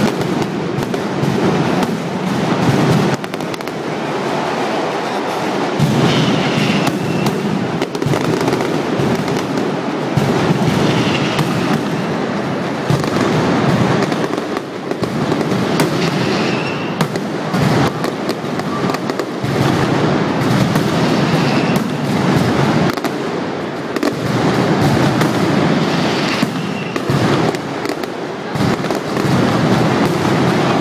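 A mascletà: ground-level firecrackers (masclets) going off in a dense, unbroken barrage of cracks and bangs, with no pause.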